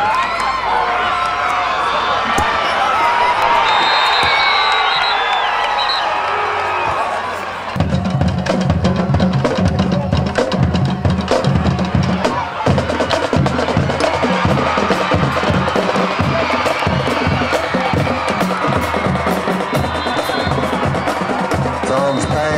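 Football crowd yelling and cheering in the stands; about eight seconds in, a band's drums (bass drum and snare) start a steady, rhythmic beat that carries on under the crowd noise.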